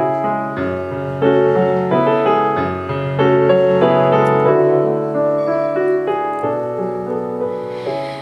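Nord Electro 3 stage keyboard playing a slow introduction of sustained chords, changing chord every second or two.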